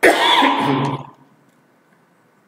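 A man coughing into his fist, one bout lasting about a second.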